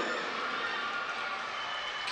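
Steady background noise of an outdoor football ground, an even hiss with no distinct events.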